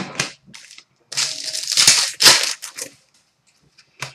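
Crinkling and rustling of card packaging and trading cards being handled, in two noisy stretches of about a second each after a short crackle at the start.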